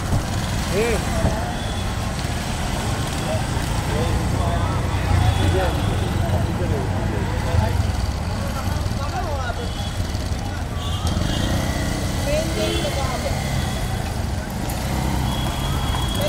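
Street traffic: a steady low engine rumble from passing motorbikes and auto-rickshaws, with scattered voices in the background.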